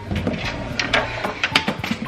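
Clicks and knocks of toiletry bottles and containers being handled and set into a clear plastic storage bin, several close together about a second and a half in, over a steady low hum.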